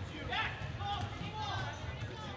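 Background sound of a basketball game in a gymnasium: faint voices of players and spectators, with a basketball bouncing on the court.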